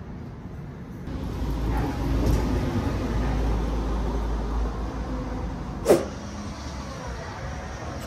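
Road vehicle passing on the street: a low rumble that comes in about a second in and fades after about five seconds, followed by a single sharp click about six seconds in.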